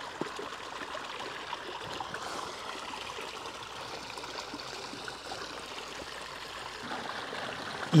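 A small stream running over rocks, a steady, even wash of flowing water.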